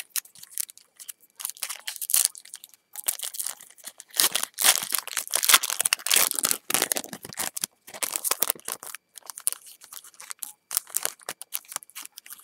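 Foil trading-card pack wrapper crinkling and tearing as it is worked open by hand. The crackle comes in irregular spurts and is loudest around the middle.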